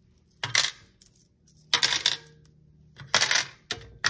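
Coins dropped a few at a time into the compartments of a cash box's coin tray, clinking in about four separate clatters.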